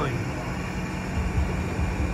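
Steady low engine and machinery rumble with a faint steady hum, as of a small tractor's engine running and dockside or ship machinery.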